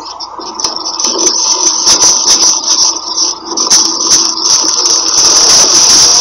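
Groceries being handled and moved: loud, irregular rattling and clicking that grows louder about a second in, with a steady high hiss near the end.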